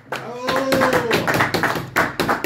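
Quick hand clapping by a few people applauding an a cappella song, with a voice calling out one long note over the claps in the first half.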